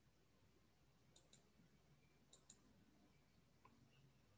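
Near silence with faint computer mouse clicks: two quick pairs about a second apart, then a single softer click near the end.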